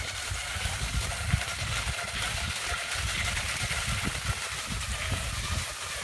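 Waxless cross-country skis gliding downhill on a groomed snow track, a steady noisy hiss of the ski bases on the snow, over an uneven low rumble.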